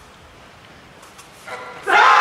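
Quiet hall tone, then a short shout about a second and a half in, followed near the end by sudden loud, sustained shouting as a barbell snatch is pulled and caught overhead.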